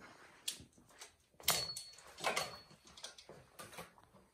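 A handful of light knocks and rustling handling sounds, about five spread over a few seconds.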